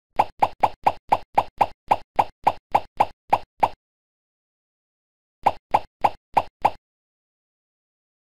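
A rapid run of short, identical cartoon-style pop sound effects, about four a second: roughly fourteen in a row, a pause of under two seconds, then five more.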